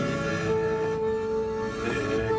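Klezmer-style accompaniment of accordion and saxophone: one long held note of about a second and a half over steady sustained chords.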